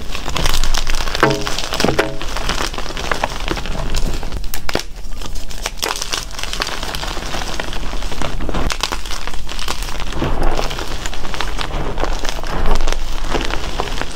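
Hands crushing and crumbling blocks of dyed gym chalk into a bowl of loose chalk powder: a dense, continuous run of crunches and crackles as the blocks break apart.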